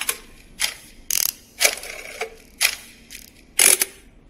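A mechanical clicking and ratcheting sound effect, like gears turning, in a series of short sharp strokes about two a second.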